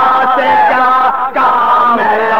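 Male chanting of a marsiya, an Urdu elegy, in long, drawn-out melodic notes that waver in pitch, with a brief break for breath a little past the middle.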